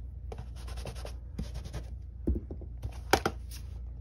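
A clear photopolymer stamp on its acrylic block being scrubbed on a stamp-cleaning pad: quick scratchy rubbing strokes in several short runs, with a couple of light knocks of the block in the second half.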